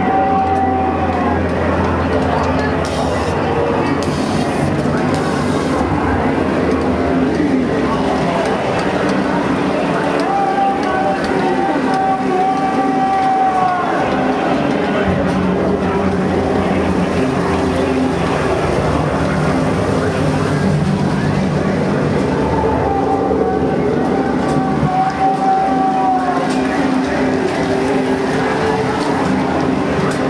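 The ride's recorded show soundtrack: voices singing over music through the scene speakers, with long held notes every ten seconds or so.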